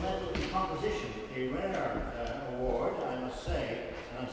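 A man speaking, reading aloud.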